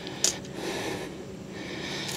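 A man breathing heavily, with one short sharp breath about a quarter second in, then a steady breathy hiss.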